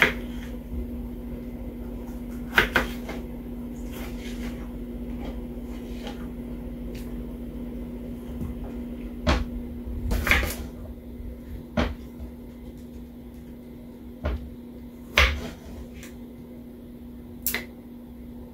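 A small knife cutting tomatoes on a plastic cutting board: scattered sharp knocks of the blade and fruit against the board, about eight in all, over a steady low hum.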